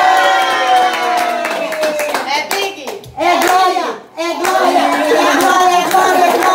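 A small family group clapping in time while their voices sing and cheer for a birthday cake, the voices dropping out briefly a little past three seconds and again around four seconds in.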